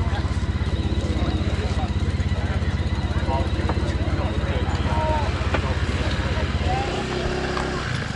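An engine running steadily at idle close by, with a fast, even putter; it eases and changes near the end. Faint voices of people talking behind it.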